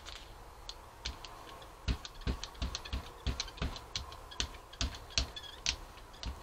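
Quiet, irregular clicking and ticking, about one to two a second, from a brayer rolling acrylic paint across a gel printing plate.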